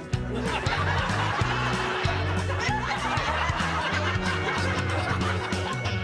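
A group of people laughing together, starting about a third of a second in, over background music with a steady bass line.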